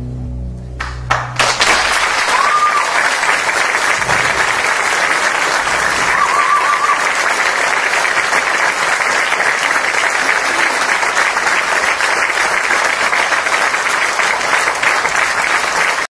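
The band's last held chord dies away about a second in, and an audience breaks into loud, steady applause that runs on, with two short whistle-like tones from the crowd.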